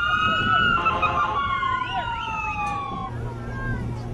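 Emergency vehicle siren wailing, its pitch slowly rising and then falling, stopping about three seconds in.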